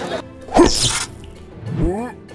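Animated intro sting: a short rising, voice-like sound that breaks into a hissing burst, then a second rising sound near the end.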